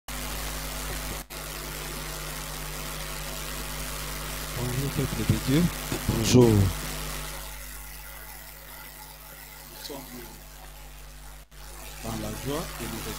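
Steady hiss and mains hum from a church sound system, with a man's voice checking the microphone by repeating a greeting into it about five seconds in. The hiss drops lower after that, and the sound cuts out for a split second twice.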